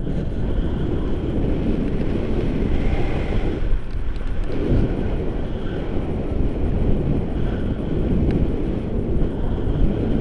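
Wind buffeting the camera microphone in flight under a tandem paraglider: a steady, loud low rumble of rushing air that swells and eases.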